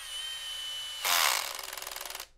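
Cordless drill with a quarter-inch nut driver running free with a steady whine, then grabbed by hand about a second in: the clutch, set to its lowest torque, slips with a louder burst and then a fast rattle of clicks instead of driving.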